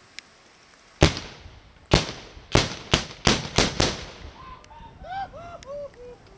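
A volley of seven blank black-powder shots from Prangerstutzen, the heavy hand-held salute guns of Austrian Prangerschützen, fired one after another in a Sternschießen. The first two come about a second apart and the other five follow close together, each bang ringing on in echo.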